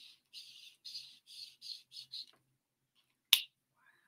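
A run of short scratchy rubbing strokes, about three a second, stopping a little past two seconds in, then one sharp click near the end.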